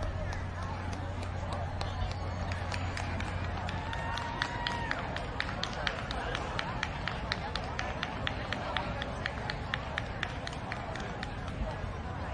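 Camera shutter firing in a long rapid burst, about four clicks a second, starting about two seconds in and stopping near the end, over a murmur of crowd voices and a steady low hum.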